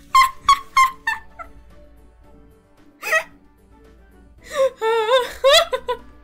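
A person laughing: four quick bursts in the first second, another about three seconds in, then a high-pitched, wavering laugh near the end. Quiet background music plays underneath.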